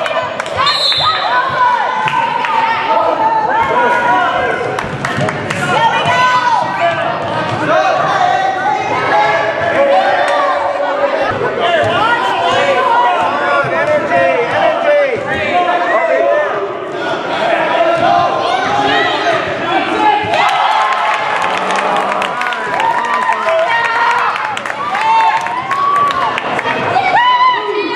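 A basketball bouncing on a hardwood gym floor as a player dribbles, with many overlapping voices of spectators and players talking and calling out.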